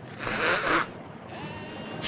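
A man with a head cold blowing his nose once, a short noisy blow lasting about half a second.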